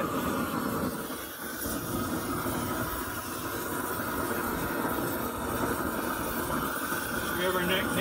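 Long-wand propane torch burning steadily with an even rushing noise as it heats a tray of metal hardware to burn off the factory residue and lacquer.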